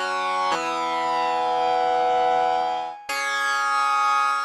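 Synthesized organ from the Organito 2 VST plugin playing long held notes, each a single steady tone rich in overtones. The note changes about half a second in, fades out near three seconds, and a new note starts right after.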